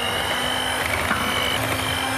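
Electric hand mixer running steadily at speed, its twin beaters whipping cream and chocolate in a glass bowl until it foams. The motor gives a steady whine.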